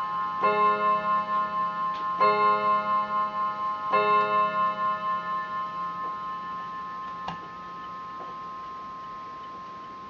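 Bentima Hermle triple-chime mantel clock striking the same chord three times, evenly about 1.7 s apart, the metal chime rods ringing on and fading away after the last strike. A single sharp click follows a few seconds later.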